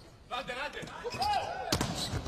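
Volleyball hit hard in a rally at the net, a sharp smack near the end.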